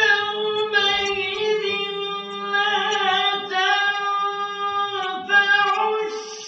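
A man's voice in melodic Quran recitation (tajwid), starting abruptly and holding long notes with pitch turns between them, with a short break for breath about five seconds in.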